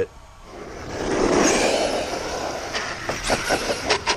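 ARRMA Kraton 1/5-scale RC truck, fitted with a Hobbywing 5687 brushless motor on the stock ESC, driving on asphalt. A rush of motor, drivetrain and tyre noise builds about a second in, with a few sharp clicks near the end.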